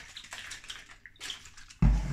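Vinegar sprinkling from a bottle onto a plate of chips, a faint irregular liquid splatter. Near the end comes one sudden, much louder thump against the table.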